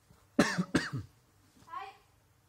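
Two short, sharp vocal bursts from a person, one right after the other, followed near the end by a softer voiced sound.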